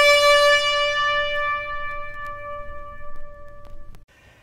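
A trumpet holding one long note that slowly fades away and stops just before the end.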